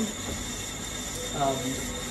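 Eversys Enigma espresso machine's automatic steam arm dispensing hot milk into a stainless steel jug: a steady hiss over a low rumble. A man's voice says a brief "um" about halfway through.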